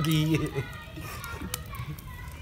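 A man's voice ends a phrase in the first half-second, then faint background voices over outdoor noise, with one sharp click about one and a half seconds in.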